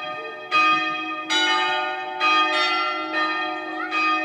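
Church bells ringing: several strokes about a second apart, each ringing on and overlapping the next.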